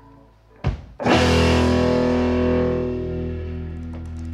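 Live band's closing chord: a short sharp hit about half a second in, then electric guitar, drums and upright bass strike one loud chord together about a second in. The chord rings on and slowly fades.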